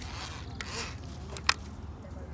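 Rubbing and scraping of a plastic toy being handled, with a single sharp click about one and a half seconds in.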